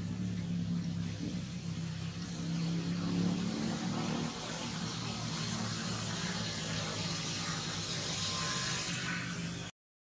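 An engine droning steadily, its low hum fading out about halfway through and leaving a steady hiss. The sound cuts out briefly near the end.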